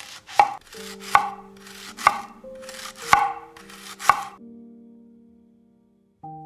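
A chef's knife slicing through a leek onto a wooden chopping board: about five cuts roughly a second apart, each ending in a sharp knock on the board, stopping a little after four seconds in.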